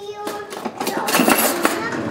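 Kitchen utensils and dishes clinking and clattering, starting about a second in.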